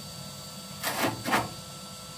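Two short scraping noises from metal parts in the base of a multi-fuel wood-burning stove being worked by a gloved hand, the first just under a second in and the second half a second later.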